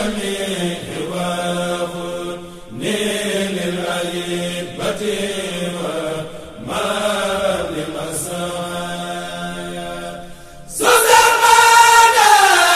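Devotional chanting: long, drawn-out sung phrases over a held low note, coming in three phrases of about four seconds each. A louder, higher-pitched section begins near the end.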